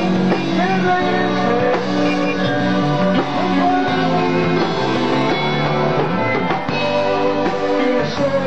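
A rock band playing live on stage: a drum kit and guitars carrying a continuous, steady-level song.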